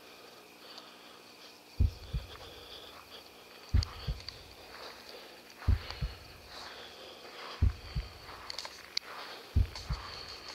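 A deep double thump, like a slow heartbeat, repeating evenly about every two seconds: a heartbeat sound effect.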